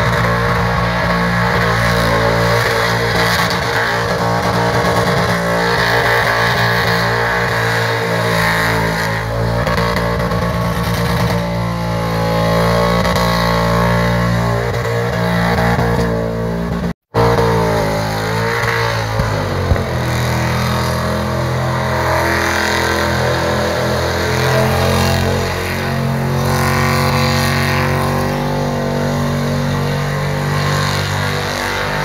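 LS1 V8 engine held at high revs through a tyre-smoking burnout, with music playing over it. The sound drops out for an instant just past halfway.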